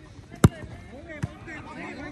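A football being kicked: one sharp, loud thud about half a second in, then a softer thud just past a second, with players' voices calling in the background.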